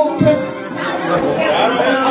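Several people's voices chattering over music, with a man speaking into a microphone.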